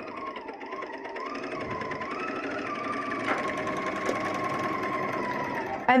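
Bernina serger running a four-thread overlock seam: a fast, even clatter of needles, loopers and the up-and-down cutting blade over a wavering motor whine, growing gradually louder.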